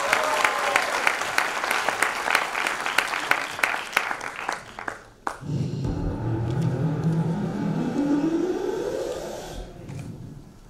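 Audience applause that thins and dies away about five seconds in. Then instrumental music starts with sustained low notes, the intro of the backing track for the song she is about to sing.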